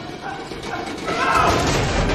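Mine-cart wheels clattering along rails, with a vocal cry about a second in as the sound grows louder.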